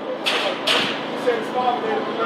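A man's voice, faint and away from the microphone, in a street setting. Two short hissing bursts come within the first second.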